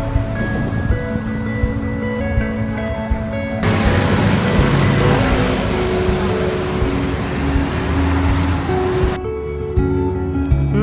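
Background music with held, sustained notes, joined through the middle of the stretch by a dense, even rushing noise that stops abruptly.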